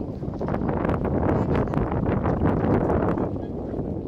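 Wind buffeting a phone's microphone in a steady, dense rumble that swells a little in the middle.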